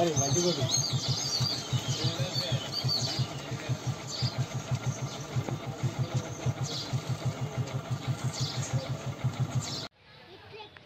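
A small engine idling, a steady low pulse of about six beats a second, with voices near the start and high chirps over it.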